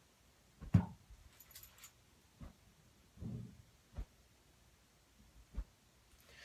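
Several dull, low whooshes of a flat acrylic lightsaber blade (darkblade) swung flat-side first, the broad face catching the air, which costs the swing speed and control. The loudest whoosh is about a second in.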